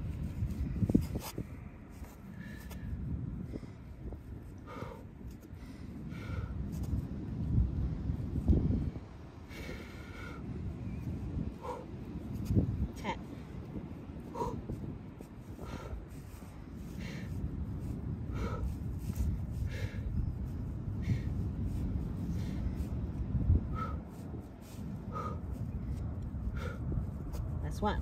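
A woman's short, breathy exhales, one with each leg kick of a kneeling kickback exercise, about one every second and a half. Underneath runs a steady low rumble of wind on the microphone.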